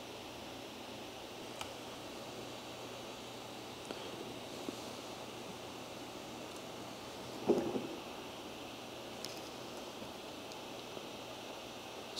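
Quiet room tone with a steady hiss, a few faint clicks scattered through it, and one brief soft sound about two-thirds of the way in.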